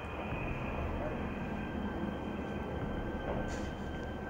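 A steady low rumble with faint, muffled voices, from the film's soundtrack playing in the room.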